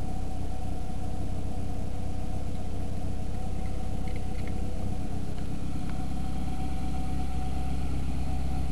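A car engine idling steadily, heard close up with the hood open; the low hum grows stronger about six seconds in.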